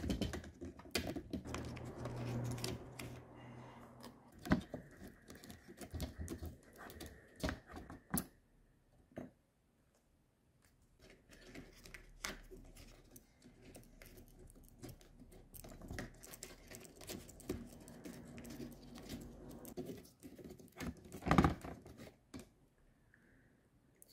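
A tape-covered paper strip being worked by hand inside a sealed laptop fan housing to pick up trapped dust and fur: scattered small clicks, taps and rustling scrapes against the housing, with a brief lull near the middle and a louder burst of clicks a little past twenty seconds.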